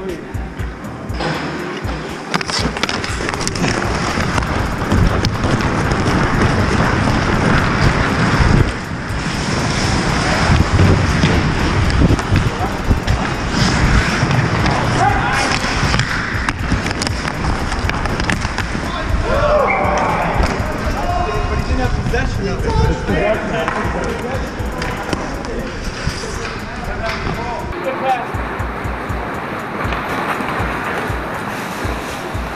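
Ice hockey play close up on a player's helmet camera: skates scraping and carving the ice and sticks and puck clacking, with players' shouts and music over the rink noise.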